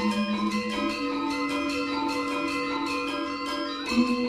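Gamelan ensemble playing: metallophones and kettle gongs struck in quick, even strokes over a long, low ringing tone that steps up in pitch about a second in.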